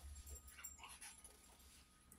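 Near silence: room tone with a low steady hum and a few faint, brief sounds.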